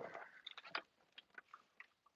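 Faint, scattered clicks and crunching from a hand-cranked die-cutting machine as the plate sandwich holding a cutting die is rolled through under pressure.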